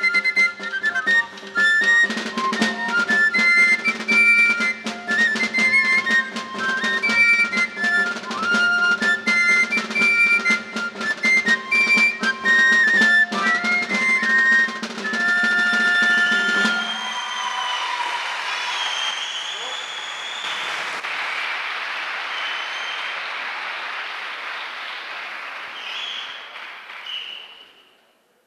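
Live Basque folk dance music: a high pipe melody over a steady low drone, with a regular drumbeat, ending about two-thirds of the way through. Applause follows for about ten seconds, fading and cutting off suddenly at the end.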